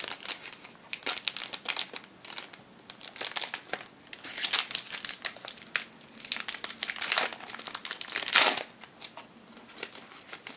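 Foil wrapper of a Topps Triple Threads trading-card pack being peeled open and crinkled by hand, a run of crackles with two louder crinkles about four and eight seconds in.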